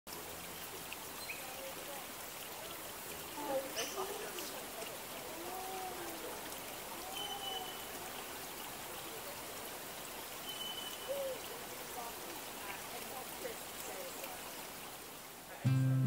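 Forest ambience: a faint, steady hiss with scattered short bird calls and whistles, the loudest of them about three and a half seconds in.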